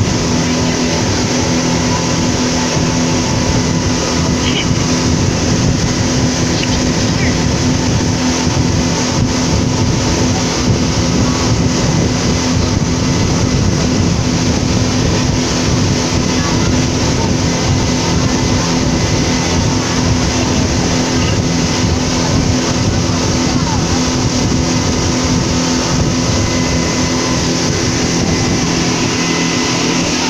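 Speedboat under way at speed: a steady engine drone with several held tones over the continuous rush of water along the hull.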